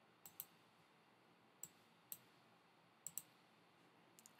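About six faint, sharp computer clicks spread over near silence, some in quick pairs, from working the computer's keys and mouse.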